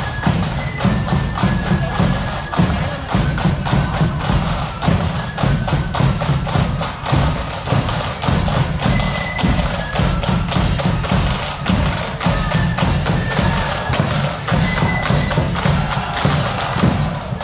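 Marching band music with drums beating a steady rhythm, and a few short high held notes above the beat.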